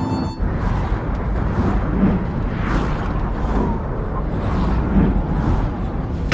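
A loud, dense rushing roar of wind and rumble past a speeding bullet train, swelling and easing about once a second, with film music faint beneath it.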